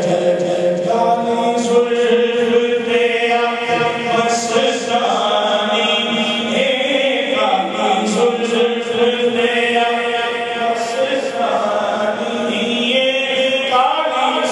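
A man singing a naat into a microphone, amplified over a public-address system in a large hall, holding long drawn-out notes that glide from one pitch to the next.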